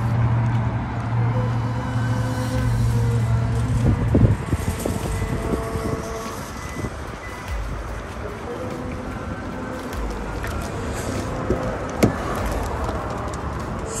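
A vehicle engine runs nearby with a steady low hum for about the first four seconds. After that comes fainter car-park traffic noise with a few short knocks, under background music.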